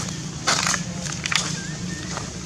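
Dry fallen leaves crunching and crackling underfoot in a few short bursts, about half a second in and again just past a second, over a steady low hum.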